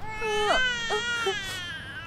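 Infant crying: one long, wavering wail that slowly falls in pitch and fades out near the end.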